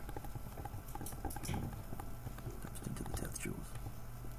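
Stylus tapping and scraping on a tablet screen while writing out a number by hand: an uneven run of small, quick clicks.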